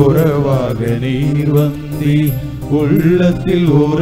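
Church choir of men and women singing a Tamil hymn through microphones, with long held notes.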